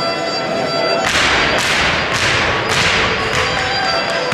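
Irish dancers' hard shoes striking the floor together in the rhythm of the dance, a loud clatter of beats roughly twice a second starting about a second in, with fiddle music underneath.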